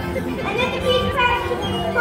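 Children's voices over music.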